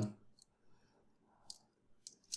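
A few faint clicks from a metal draw latch being turned over in the hands, its handle and latch arm shifting on their pins. The clearest come about half a second and one and a half seconds in.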